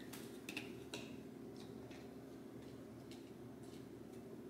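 Faint, scattered light ticks and scrapes of a silicone spatula working thick cashew frosting off a plastic blender tamper.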